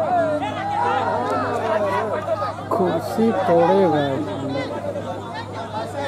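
Several people talking and calling out at once, their voices overlapping, with the loudest voice about three to four seconds in, over a steady low hum.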